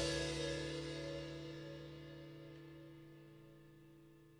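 The final chord of an indie rock song ringing out after the band's last hit, a held chord with a cymbal wash, fading steadily away to nothing.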